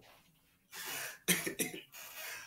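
A man coughing: a few short coughs in the second half.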